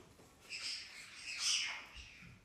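A pet parrot squawks twice, a short call about half a second in and a louder, harsher one near the end.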